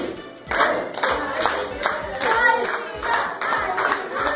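A group clapping in time, about two claps a second, with people singing along from about a second in.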